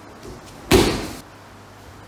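A person landing a breakfall on the dojo mat: one loud thud about three quarters of a second in, dying away over half a second.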